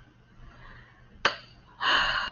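A person's quick intake of breath near the end, after a brief sharp click a little over a second in.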